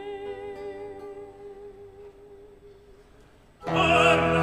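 Early Baroque opera: a female singer's held, wavering note fades slowly over about three seconds above a quiet accompaniment. Just before the end a new singer and the instruments come in loudly.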